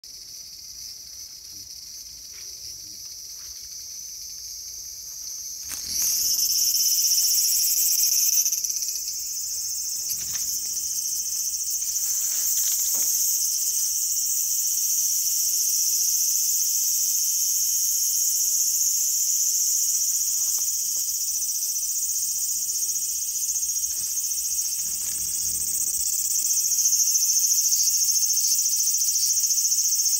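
Cicadas singing: a steady high-pitched buzzing drone that jumps suddenly louder about six seconds in and stays loud.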